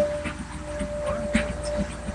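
A puppy whining: one thin, steady note held for nearly two seconds, stopping shortly before the end.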